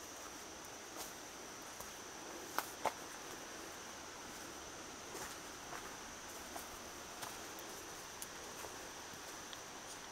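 Steady high-pitched insect drone in the woods, with scattered light footsteps on the dirt trail and two sharper clicks about three seconds in.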